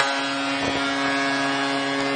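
Hockey arena goal horn held on one long steady note, celebrating a home goal, with a crowd cheering beneath it.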